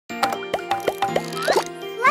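Children's channel intro jingle: music over a held chord, with a quick run of short popping sounds that bend in pitch, and a rising swoop near the end.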